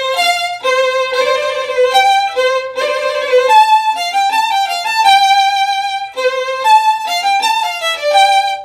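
Solo violin bowing a phrase of several notes, each with a big, fat vibrato that starts the instant the finger lands, with no straight tone first: the 'awesome vibrato' style.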